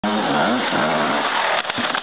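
Dirt bike engine revving under throttle, its pitch rising and falling in quick swells, then easing off near the end.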